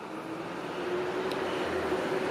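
Steady background vehicle noise with a faint hum, growing slightly louder over the first second.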